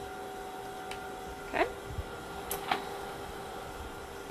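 Glass sample vials being pushed into an autosampler tray: a short rising squeak as one is pressed into a tight slot about one and a half seconds in, then a few light clicks, over a steady hum from the lab instruments.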